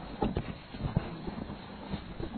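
A few short, scattered knocks and taps over a faint low hum.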